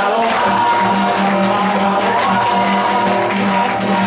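Live acoustic guitar strummed with singing, and hands clapping along in time.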